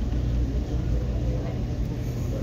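Steady low rumble and hum of a restaurant dining room's background noise, with faint voices in it.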